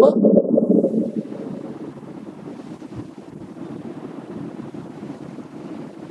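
A congregation calling out an answer together, loud for about a second and a half, then dying down to a low, steady murmur.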